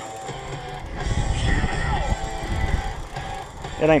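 Hard rock with electric guitar playing from a boat's radio.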